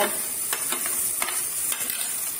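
Chopped tomatoes and onions sizzling in hot ghee in a nonstick wok, with a spoon clicking and scraping a few times as the tomatoes are pushed in and stirred.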